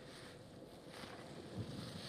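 Wind buffeting the microphone in a steady low rumble, with one short low thump about one and a half seconds in.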